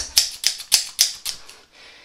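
A pair of scissors snipping about five times in quick succession, sharp clicks roughly three a second, stopping about a second and a half in.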